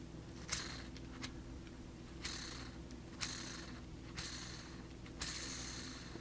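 A small ball bearing being spun by hand on a tool shaft, giving a run of faint, short whirs about a second apart, each starting sharply and dying away. It is a freshly WD-40-flushed bearing being worked to free it of the grit loosened inside.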